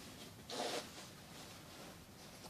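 Zipper of a quilted children's winter jacket being pulled open: one short zip about half a second in.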